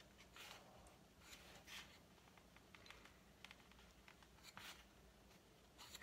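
Near silence with a few faint, brief rustles and taps of paper being lined up on a paper trimmer before the cut.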